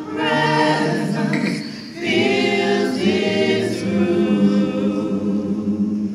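A small mixed choir singing a gospel song a cappella, in held chords, with a short breath between phrases about two seconds in.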